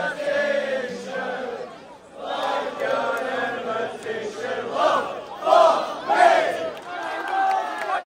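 A large crowd of male football supporters chanting and singing together in unison. There is a short dip about two seconds in, and louder shouted lines come between about five and six and a half seconds.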